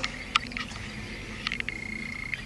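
A few light clicks and taps of push sticks being handled and set down on a wooden shelf, over low room noise, with a faint thin high tone starting about midway.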